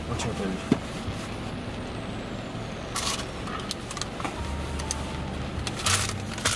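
Steady low hum and hiss inside a car's cabin, with brief rustles of a paper food bag about three seconds in and again near the end.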